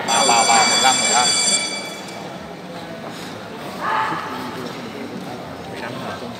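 A high electronic buzzer sounds for about a second and a half over voices in the hall, likely signalling a break in the bout.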